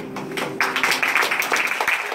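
Audience applauding, the clapping breaking out about half a second in as the last held note of a song fades.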